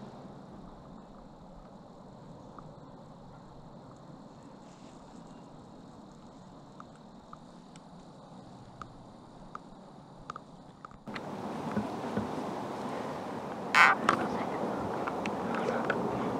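Faint woodland ambience with a few scattered small ticks. About eleven seconds in the sound cuts to a louder, rougher hiss with crackles, and a brief sharp rustle comes a few seconds later.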